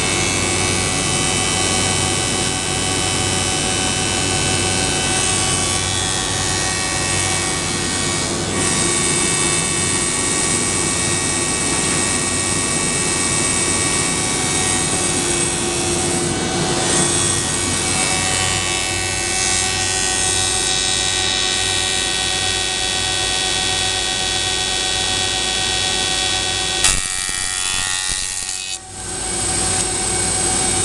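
SCM Compact 23 K throughfeed moulder running steadily, its motors and spinning cutter heads giving a loud whine made of many steady tones as wood is fed through. A sharp click comes near the end, followed by a brief dip in the sound.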